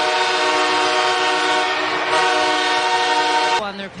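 Ice hockey goal horn sounding one long, steady multi-note chord, signalling a goal just scored, cut off abruptly about three and a half seconds in.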